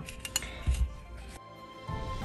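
A few light plastic clicks and a soft thump as a plastic ruler and a fabric wallet with snap fasteners are handled on a cloth-covered table. Faint music runs underneath and comes up near the end.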